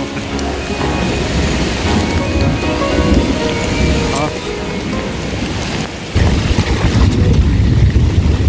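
Heavy rain pouring down during a mountain-bike descent, with a low rumble underneath that grows sharply louder about six seconds in. It is heard through a camera that has flipped round against the rider's jersey.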